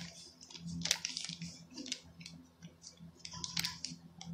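Paper bag crinkling and rustling in the hand as cornstarch is shaken out of it into a cup: a run of short, irregular crackles.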